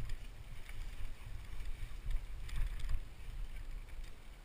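Mountain bike rolling down a dirt forest trail: a steady low rumble of tyres and wind buffeting the microphone, with scattered rattles and clicks from the bike over bumps, most of them a little past the middle.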